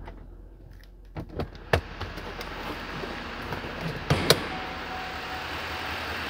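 6.6-litre LML Duramax V8 diesel idling, heard from the cab, its running noise growing louder about two seconds in. A few sharp knocks and clicks come over it, the loudest just before the two-second mark and again around four seconds.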